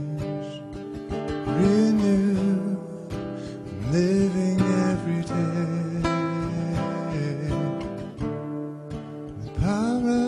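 A man singing a slow worship chorus, his long held notes swooping up into each phrase, with a picked acoustic guitar accompanying him.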